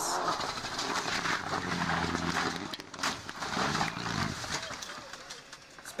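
Rally car engine running on a gravel stage amid road and tyre noise, with a sharp crash about three seconds in as the car goes off the road.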